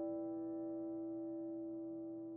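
Soft solo piano: a single held chord slowly dying away, with no new notes struck.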